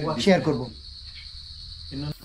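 Crickets chirring in a steady, high-pitched, unbroken drone, with a man's voice finishing a word at the start.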